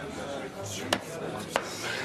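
Murmur of a pub crowd, with two sharp knocks about a second in, some half a second apart.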